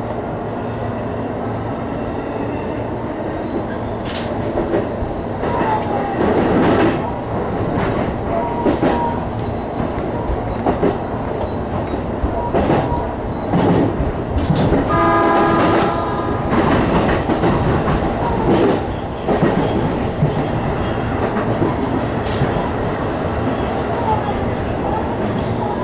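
Electric commuter train running through a yard's points, heard from on board: steady running noise with the wheels clicking and clattering over the switch and rail joints, busier from about four seconds in. A brief pitched tone sounds for about a second some fifteen seconds in.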